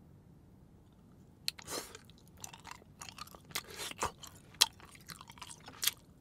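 Lotte grape chewing candy bitten and chewed close to the microphone. After about a second and a half of quiet comes a sharp bite, then an irregular run of clicks and chewing noises.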